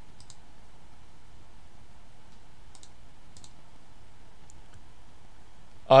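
A few faint, sharp computer clicks, scattered over a few seconds against a steady low background hiss, as a Bible passage is brought up on screen. A man's voice starts right at the end.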